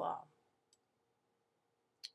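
A single faint computer mouse click, a little under a second in.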